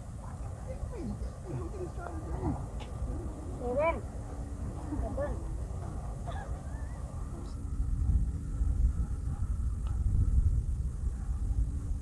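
Short, wordless exclamations from people on a golf green, the loudest a rising call about four seconds in. Under them runs a steady low rumble that grows louder in the second half.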